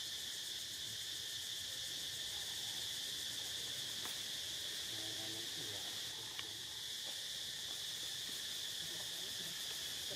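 Steady high-pitched drone of forest insects chirring without a break, an unchanging background chorus.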